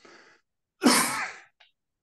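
A man's short breath in, then a loud single cough about a second in.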